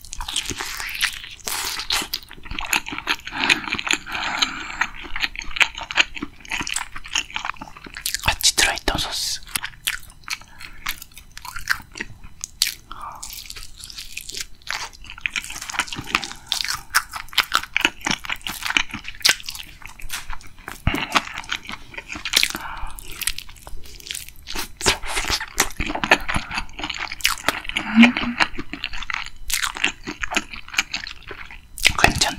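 Close-miked biting and chewing of a sauce-coated Korean fried chicken (yangnyeom chicken) drumstick: repeated crisp crunches of the fried coating, with wet chewing in between.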